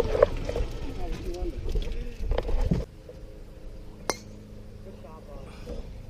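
Low rumbling noise with voices over it, cutting off abruptly about three seconds in, followed by a faint steady low hum and a single sharp click.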